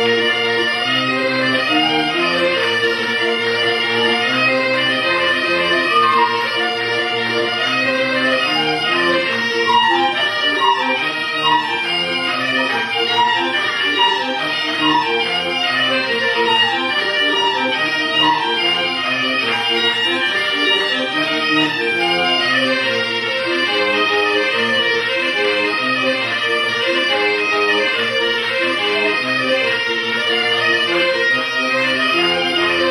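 Live folk tune played on two gaitas (bagpipes), a transverse flute and a diatonic accordion, the pipes' steady drone held under a fast, busy melody.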